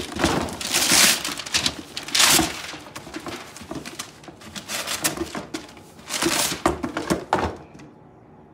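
Wrapping paper being torn and rustled off a cardboard gift box, in several short bursts with pauses between.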